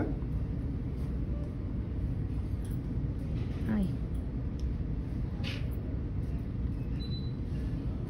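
Steady low background rumble. A brief soft click comes about five and a half seconds in, and a faint short high beep near the end.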